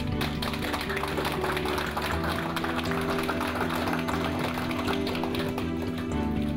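A small group clapping, over background music with steady held notes. The clapping starts suddenly and stops about six seconds later.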